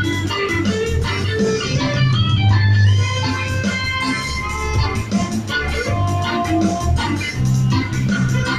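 Live reggae band playing an instrumental passage: electric guitars, an organ-style keyboard, bass and drums, with a steady rhythm and heavy bass.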